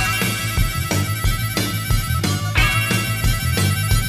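Instrumental break in an upbeat rock-and-roll rhythm-and-blues song with no vocals. A lead instrument holds high, steady notes over bass and a regular drum beat.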